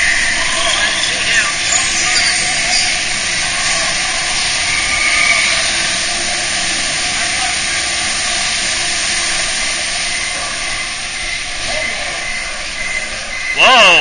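Log flume water rushing steadily along the ride channel: a broad, even hiss that holds at one level throughout, with faint steady tones beneath it.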